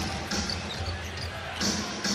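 Basketball arena sound during live play: a steady crowd murmur, with a basketball being dribbled on the hardwood court.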